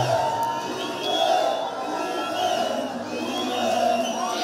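Crowd of football spectators cheering and shouting, rising and falling in waves.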